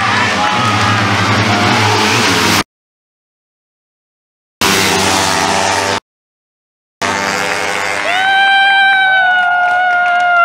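Racing motorcycle engines at full throttle, Suzuki Raider R150 single-cylinder four-strokes, loud, chopped into short pieces by two abrupt silent gaps. In the last couple of seconds one engine holds a steady high pitch, then it drops away at the end.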